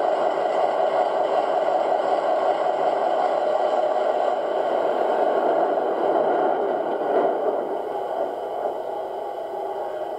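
Sound decoder of a Lenz O gauge DB V100 (class 212) model diesel locomotive playing its diesel engine sound through the model's onboard speaker as the locomotive runs slowly along the track. The sound is steady and gets quieter from about eight seconds in.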